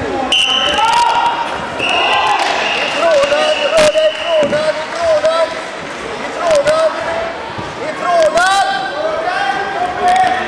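Coaches and spectators shouting short, high-pitched calls at the wrestlers, over and over, with a few sharp thuds and slaps from bodies hitting the mat, one near four seconds in and another past eight seconds.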